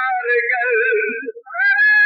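A voice singing a melodic line in a high register with wavering pitch. It breaks off briefly near the end, then comes back on a long, steady held note.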